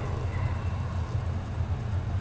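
A steady low hum with faint hiss, unchanging throughout.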